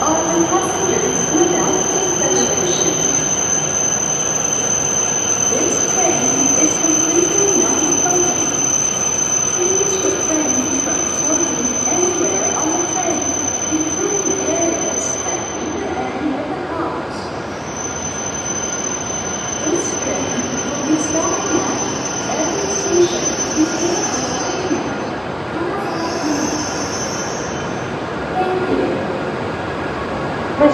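Hokuriku Shinkansen train pulling in alongside the platform and slowing to a stop. A steady high-pitched whine runs through it, breaks off about halfway, and comes back for a while before fading.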